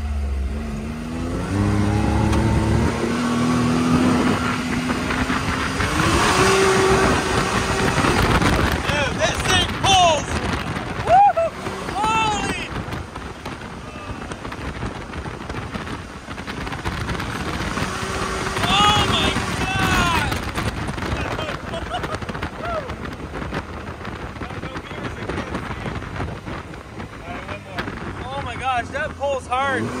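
Can-Am Maverick X3 XRS Turbo RR's turbocharged engine pulling hard under acceleration, its pitch climbing in steps as it speeds up, then easing off. It pulls hard again about eighteen seconds in.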